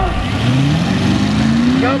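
Lifted mud truck's engine revving up, its pitch climbing slowly and steadily. A voice shouts "go" near the end.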